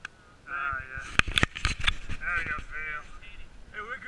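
Sled dogs yelping and whining in high, wavering cries, with a few sharp knocks about a second in as the camera is moved.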